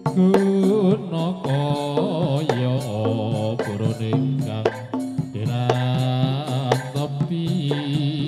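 Live jaranan gamelan music: a wavering, sustained melodic line of long held notes over steady drum strokes.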